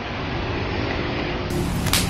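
Steady, loud background noise of a busy workplace, a wide hiss and rumble with one sharp click near the end.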